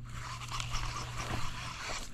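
Baitcasting reel being cranked to retrieve a topwater frog: a steady whir with a low hum that stops near the end.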